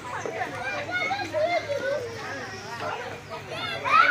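A group of young children talking and calling out over one another, several voices overlapping at once.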